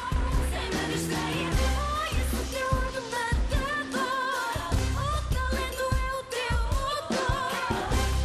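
Upbeat pop song with a heavy pulsing bass beat and a high melody line with vibrato over it; the bass drops out briefly twice.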